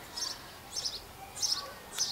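A bird chirping: a few short, high notes, about one every two-thirds of a second.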